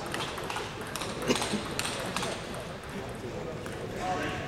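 Table tennis rally: the ball clicking sharply off the bats and the table, several hits roughly half a second apart, the loudest a little over a second in, stopping after about two seconds.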